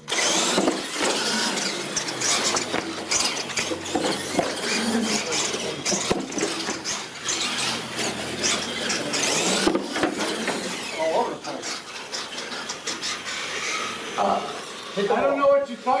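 Radio-controlled monster trucks racing over a hard tiled floor, starting abruptly: motors whining, tyres squealing and scrubbing, and repeated knocks from landings and bumps on the ramps.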